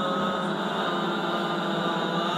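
Sopranos and altos of a choir singing unaccompanied, holding long sustained notes.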